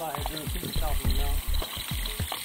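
Indistinct voices speaking over a steady low rumble.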